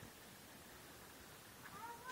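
Near silence, then a short high-pitched child's call or squeal near the end.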